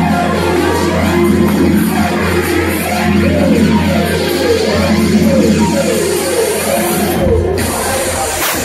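Electronic dance music with a steady deep bass and a repeating rising-and-falling synth line; the high end drops out briefly near the end.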